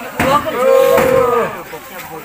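A cow mooing once, one long call of about a second, just after a sharp knock.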